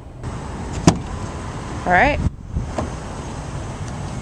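Car door of a 2007 Ford Edge being opened: a sharp latch click about a second in and a lighter click near three seconds, over a steady low outdoor rumble.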